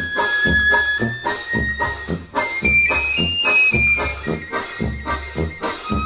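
Instrumental Christmas music played by a small Brazilian band: a high flute melody of long held notes over a steady bass beat about twice a second, stepping up in pitch midway and back down.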